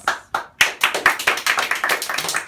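A small group of people clapping their hands, starting about half a second in: many quick overlapping claps.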